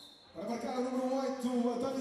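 A person's voice holding one long, steady note, starting about a third of a second in.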